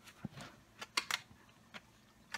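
About half a dozen short, soft, scratchy clicks and rustles at irregular spacing, close to the microphone: a Great Pyrenees's paw rubbing through a person's hair.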